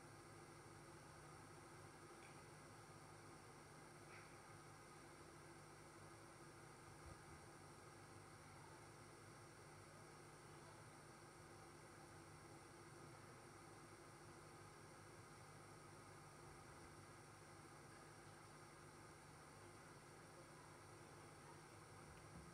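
Near silence: room tone with a steady faint hiss and low hum.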